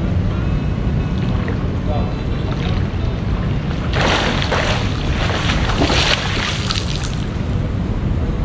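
Swimmer's front-crawl strokes splashing in a pool, loudest from about four to seven seconds in as he swims away from the water-level microphone, over a steady low rumble.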